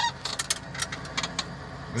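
Tractor engine running low and steady in the cab, with a string of short, sharp clicks and knocks from the phone being handled close to the microphone.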